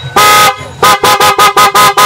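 PIAA OTO Style electric horn being test-sounded: one short blast, then a quick run of about five short toots.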